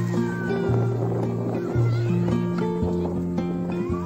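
Background music with a held bass line that changes note about once a second. Wavering, gliding animal calls sit over it in the first second.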